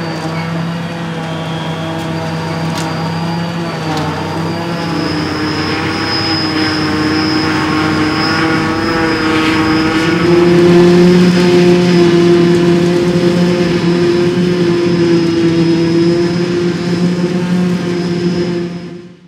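Fendt 820 tractor working hard to drive a trailed JF 1100 forage harvester that is chopping grass and blowing it into a trailer running alongside, with a steady high whine from the machinery over the engine. The sound grows louder about ten seconds in.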